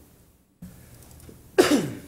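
A single short cough about one and a half seconds in, over faint room noise.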